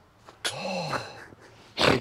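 A man's short wordless groan, rising then falling in pitch, followed near the end by a loud, sharp exhale: a reaction of dismay after a putt.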